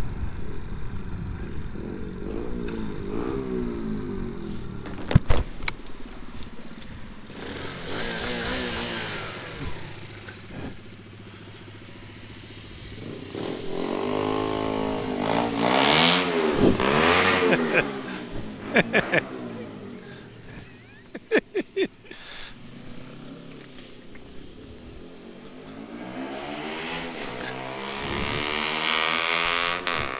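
Honda C90 Cub's small single-cylinder four-stroke engine running at low speed and slowing as the bike rolls across a fuel station forecourt to the pump. Other vehicles pass close by around the middle and again near the end, and a few sharp clicks and knocks come about five seconds in and a little after twenty seconds.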